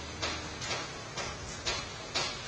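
Steady, even ticking, about two ticks a second, over a faint low hum.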